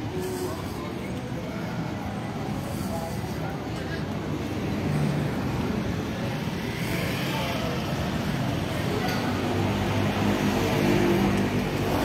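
Road traffic noise along a town street, steady and slowly growing louder toward the end.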